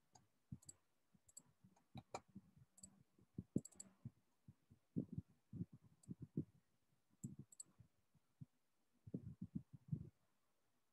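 Faint, irregular clicking of a computer keyboard and mouse as a slide is edited: scattered key taps and mouse clicks, a few in quick pairs and runs.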